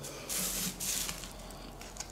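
Two short, hissy rustles, about half a second apart near the start, from hands handling loose bark potting mix and a small plastic pot.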